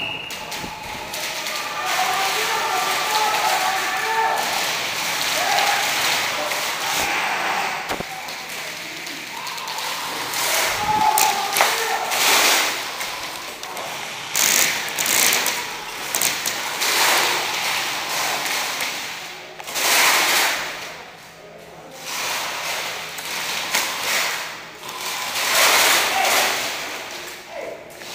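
Airsoft guns firing in short rapid bursts, with thuds and knocks among them, and people's voices.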